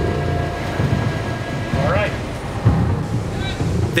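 Steady low rumble of a ship under way, under a sustained background music drone, with a brief spoken "all right" about halfway through.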